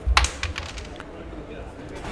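Break shot in carrom: the striker is flicked into the packed circle of wooden carrom men, giving a quick clatter of clicks and a dull knock on the board in the first moments as the coins scatter, then quiet board noise.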